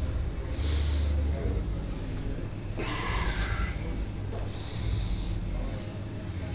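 A bodybuilder's forceful breaths as he pulls a resistance band to pump up: three sharp, hissy exhalations about two seconds apart, over a steady low background hum.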